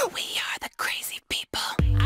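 A whispered voice: a few breathy phrases broken by short silent gaps. Near the end, music with a heavy bass line comes in abruptly.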